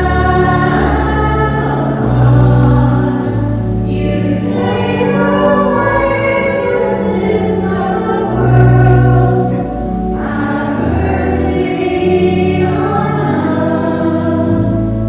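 A choir singing a slow hymn, each note held for a second or two over steady low held notes.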